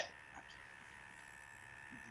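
A pause between words, nearly silent: faint steady hiss with a thin steady high tone from the remote-call audio line, after a brief vocal sound at the very start.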